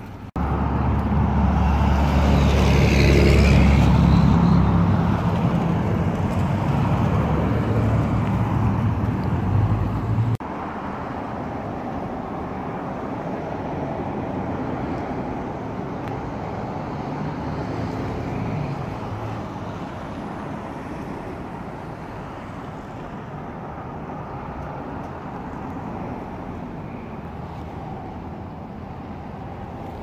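A motor vehicle's engine running close by, a low hum that is loudest about three to four seconds in. It starts and stops abruptly, about ten seconds in, giving way to a quieter, steady background rumble.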